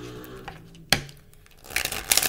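A deck of tarot cards shuffled by hand: a single sharp snap about a second in, then a quick run of riffling clicks near the end as the cards are riffled and bridged.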